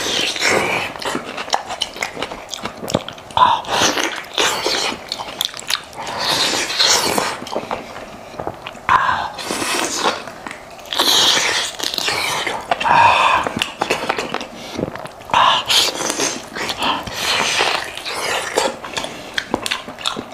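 Close-miked biting and chewing of spiced, gelatinous head meat: the meat is torn off with the teeth and chewed with wet, irregular mouth sounds.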